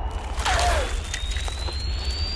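Sound effects for a slingshot projectile in flight: a low rumble under a thin whistle that climbs slowly in pitch, with a short falling squeal about half a second in.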